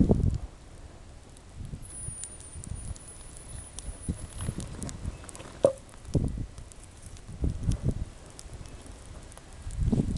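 Birch logs burning in an outdoor fire pit, crackling with scattered small pops and one sharper snap a little past the middle, among irregular low dull thumps.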